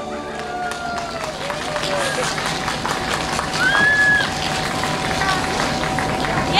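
Audience applauding after a song ends, with a few voices calling out over the clapping.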